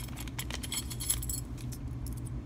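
Two-piece metal belt buckle back being handled, its small metal parts clinking together in a run of light, quick metallic clicks, over a low steady hum.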